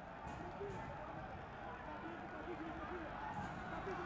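Stadium ambience of a football match: a steady hiss of background noise with faint, distant voices shouting now and then.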